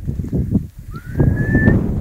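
A single short whistle that rises in pitch and then holds, about a second in, over a steady low rumble.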